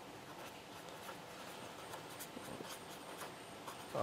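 Faint strokes of a purple marker pen writing on paper.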